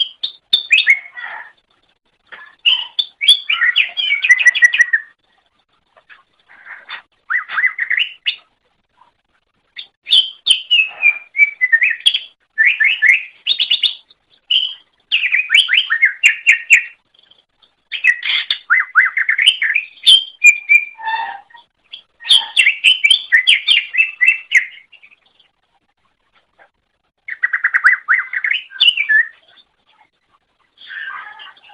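Cucak ijo (green leafbird) singing: loud phrases of rapid chattering trills and whistles, each burst lasting one to three seconds, with short pauses between them and a longer pause near the end.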